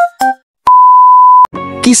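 The last notes of a short music jingle, then a brief pause and a single loud, steady electronic beep lasting just under a second.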